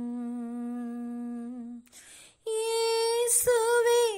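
A solo unaccompanied voice singing a Tamil hymn. It holds one long low note, takes a breath, then holds a higher note.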